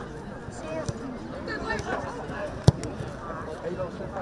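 A football kicked hard once in a free kick: a single sharp thump about two-thirds of the way in, over distant voices of players and onlookers.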